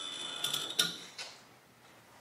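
Handling noise at a lectern: a few short clicks and rustles of papers in the first second and a half, then quiet room tone.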